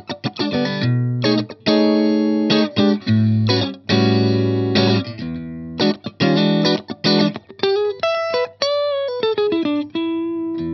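Strat-style electric guitar played through a VHT Special 6 Ultra 6-watt tube combo with a single 6V6 power tube, in a clean tone near the edge of breakup. Short, choppy chord stabs with a few longer ringing chords, then single notes with pitch bends near the end.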